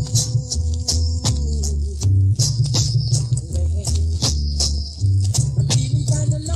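Reggae dancehall riddim played through a sound system on a live 1982 dance recording: a deep, heavy bass line under sharp, regular drum hits, with a held note near the start.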